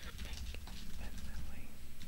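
Keys typed on a computer keyboard, a few faint clicks over a low rumble, with a faint high-pitched wavering sound near the end.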